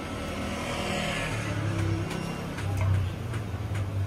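A motor vehicle passing close by: a swell of noise about a second in, then a steady low engine hum.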